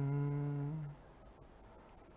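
A person's low, closed-mouth hum or drawn-out "mmm" held on one steady pitch for about a second.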